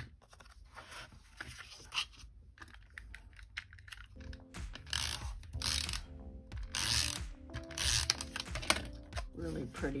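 Adhesive tape runner pulled across card stock in several short strokes, its ratcheting roller giving a whirring click, to stick patterned paper onto a card mat. Background music comes in about four seconds in.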